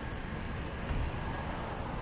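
Steady background hum of street traffic in a city, with no distinct event standing out.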